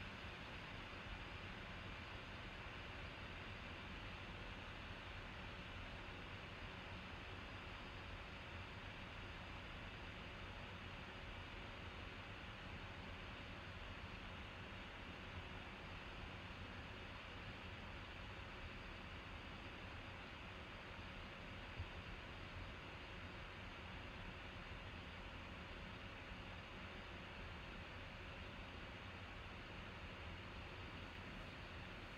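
Faint steady hiss of room tone and microphone noise, with one faint click about two-thirds of the way through.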